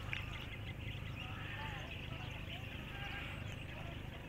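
Faint outdoor background: a steady low rumble with a few faint, brief calls about a second and a half in.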